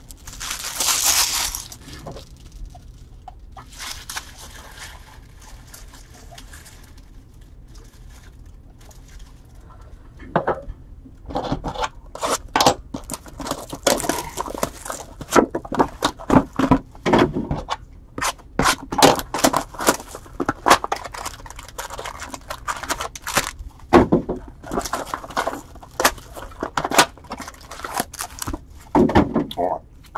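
Trading-card box and foil packs being torn open and handled: a short burst of tearing just after the start, then from about ten seconds in a dense, irregular run of crinkling, tearing and clicking as packs are ripped and cards handled.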